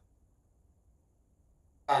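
Near silence: faint room tone during a pause in speech. A man's voice starts just before the end.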